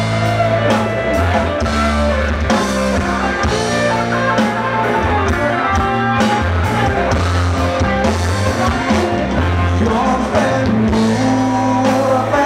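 Live rock band playing electric guitars and a drum kit with a strong bass line, with a singer's voice over them.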